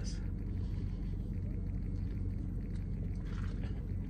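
Steady low rumble of a parked car running, heard inside the cabin.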